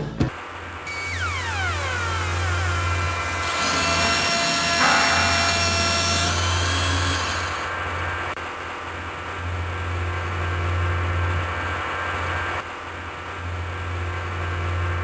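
A steady, pulsing low machine-like hum with hiss, like a motor running. Several falling whistle-like tones sound in the first few seconds.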